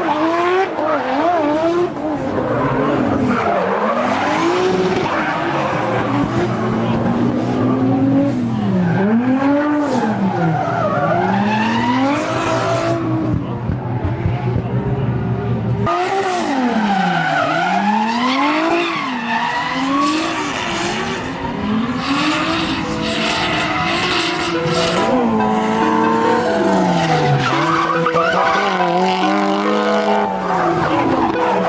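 Drift cars' engines revving hard, the pitch climbing and dropping again and again as the cars slide, over the hiss and squeal of spinning tyres. The sound changes abruptly partway through as another car comes by.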